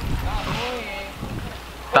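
Wind rumbling on the microphone, strongest in the first half-second, with faint voices talking in the background.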